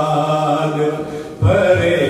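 A man chanting a Muharram noha (Urdu lament) into a microphone, drawing out long held notes, with a short break for breath about one and a half seconds in before the next line comes in strongly.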